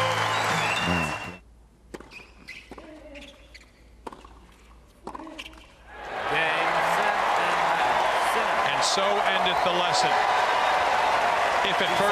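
Music fades out about a second in. On a quiet court, a tennis ball is bounced and struck back and forth with rackets in a handful of sharp pops. About six seconds in, a stadium crowd starts cheering and applauding loudly as the championship point is won.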